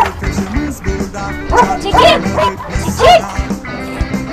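Puppies yipping and barking in short high calls, the loudest about two and three seconds in, over background music.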